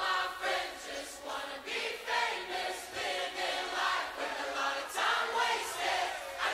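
Worship-song recording opening with a choir of voices singing together, with little or no bass underneath.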